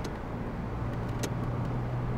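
Car driving in city traffic: a steady low engine hum with road noise, and one sharp click a little past halfway.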